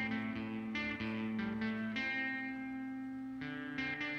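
Guitar played through a Behringer DR600 digital reverb pedal on its spring setting: about half a dozen single picked notes, each ringing on with a reverb tail, with one note held longer near the middle. The reverb comes out of both stereo channels.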